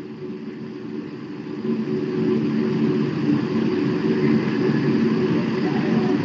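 A steady low mechanical drone, several held low tones under a rushing hiss, growing louder about two seconds in.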